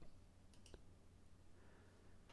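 Near silence broken by two quick, faint computer mouse clicks, a fraction of a second apart, about half a second in.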